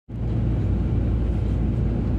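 Steady low rumble of a car on the move, engine and tyre noise heard from inside the vehicle.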